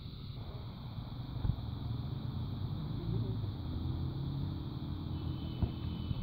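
A low engine-like rumble with a faint drone that rises slowly in pitch in the second half. Two sharp knocks come through it, about a second and a half in and again near the end.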